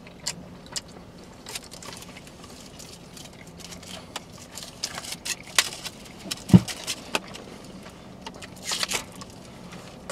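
Close-up eating sounds: chewing and the crinkle of a paper-wrapped burrito being handled, as scattered soft clicks and crackles that grow busier in the second half, with one short low knock about six and a half seconds in.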